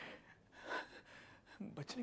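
A man's sharp, upset intake of breath about three quarters of a second into a pause in his halting speech; his voice resumes near the end.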